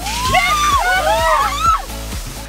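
Water splashed from a ladle onto the hot top of a steel-barrel sauna stove, sizzling into a steady hiss of steam that lasts a couple of seconds.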